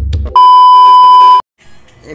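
A loud, steady, high-pitched electronic beep about a second long, an edited-in sound effect, cut off suddenly; it comes right after the last hit of the intro music.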